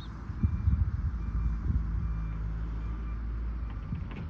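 Wind rumbling and buffeting on the microphone in uneven gusts, with faint, intermittent high beeping tones and a low steady hum in the background.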